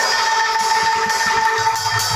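Bamboo angklung shaken in a rack, holding one sustained note. The drums drop out and come back in a little past halfway.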